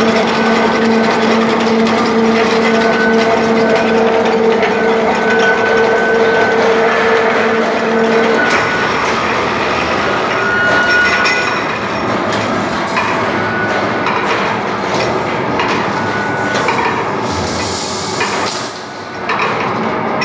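Aluminium grill-making machine running, its steel rollers drawing many thin aluminium strips through: a loud, steady mechanical clatter with a low hum that stops about eight seconds in, after which the rattling carries on.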